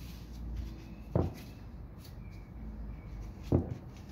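Two brief knocks as a wooden window sash is handled and tilted, over a low steady hum.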